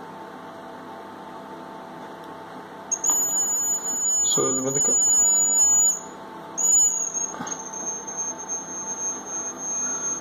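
Piezo buzzer of a homemade laser security alarm (BC547 transistor and LDR circuit) sounding a loud, steady, high-pitched beep that starts about three seconds in, breaks off for a moment just before six seconds and comes back on. The alarm is triggered because the laser beam is not falling on the light sensor. Before it starts, a faint steady hum is heard.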